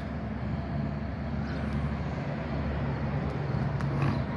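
A steady, low engine drone with a faint higher tone joining about a second and a half in.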